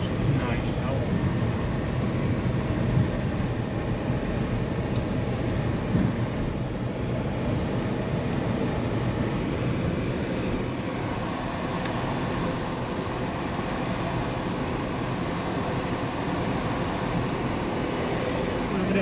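Steady low road and engine noise of a car driving, heard from inside the cabin.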